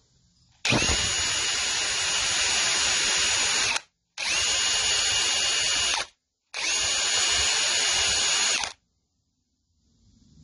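Cordless drill spinning a wire cup brush in three runs of about three, two and two seconds. Each run starts and stops abruptly, with a steady whine over a scratchy hiss, as the brush scrubs a small-engine valve clean.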